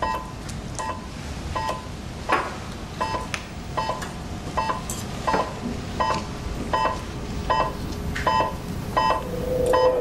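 Hospital patient monitor beeping steadily, about one beep every three-quarters of a second, keeping time with the heartbeat of a ventilated patient in an operating theatre. A held lower tone comes in near the end.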